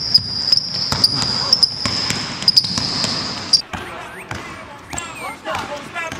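Basketball dribbled on a hardwood gym floor in irregular bounces during a one-on-one move, with sneaker squeaks near the end. A steady high-pitched whine sounds underneath and cuts off about halfway through.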